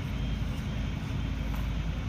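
A heavy engine running steadily, a continuous low rumble.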